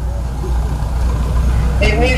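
A steady low hum over a faint noisy hiss, with no distinct events.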